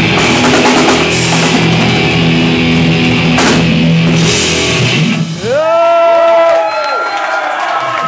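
A thrash metal band playing live, loud: fast drums with distorted electric guitars and bass. About five seconds in, the full band drops out as the song ends, leaving ringing guitar notes that bend up and down in pitch.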